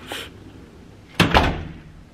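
Heavy hotel room door swinging shut and latching with a loud double bang just over a second in, after a brief swish near the start.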